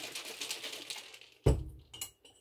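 A lidded glass mason jar of iced coffee is shaken, the liquid sloshing inside and dying away. About one and a half seconds in, the jar is set down on the countertop with a single solid thump.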